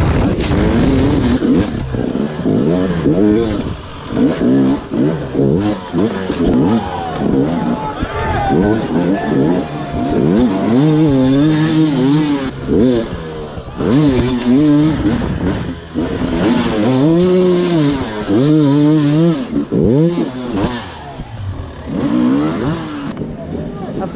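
Husqvarna enduro dirt bike engine running hard, its pitch rising and falling again and again as the throttle is opened and shut and the gears change.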